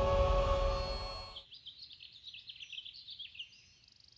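Background music with sustained tones, fading out about a second and a half in. After that, birds chirping: a run of quick, high, short calls over a quiet background.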